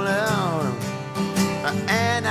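Acoustic guitar strumming a country-rock song, with a wavering held vocal note gliding down in pitch over the first second.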